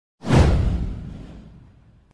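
A single whoosh sound effect with a deep low rumble underneath. It swells sharply a fraction of a second in and fades away over about a second and a half.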